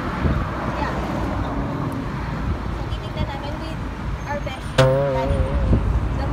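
Steady road traffic noise with a low rumble, under faint voices. About five seconds in a louder, wavering voice cuts in.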